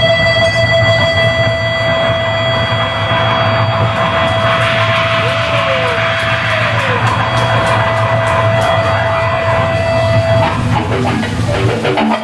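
Live rock band holding a long sustained chord: a steady high note over a low drone, with a cymbal wash coming in about four seconds in. The high note cuts off about ten and a half seconds in, and the low drone stops near the end.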